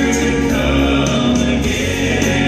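Southern gospel male quartet singing a song in four-part harmony through microphones, over an instrumental backing with a steady beat.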